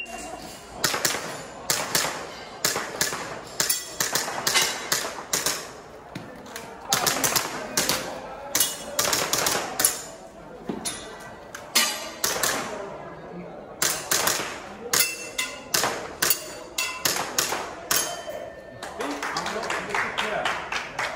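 Gas blowback airsoft pistol firing in quick pairs and strings with short pauses, some hits followed by the brief ring of steel target plates.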